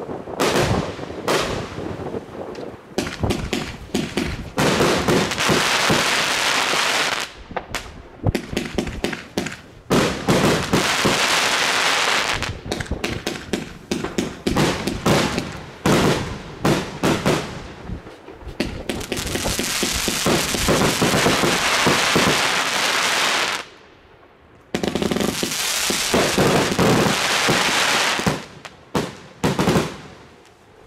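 A Funke Czesc compound firework cake firing: a rapid series of launch shots and bursts, with long stretches of dense crackling from the gold crackle stars. There is a brief lull about three-quarters of the way through, then the barrage thins out and dies away at the end.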